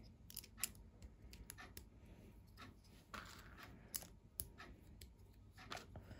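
Small plastic Lego bricks being handled and pressed together into a tabletop: a scattering of faint clicks and light taps.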